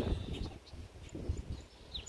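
Faint outdoor ambience: a low rumble, with a short high bird chirp just before the end.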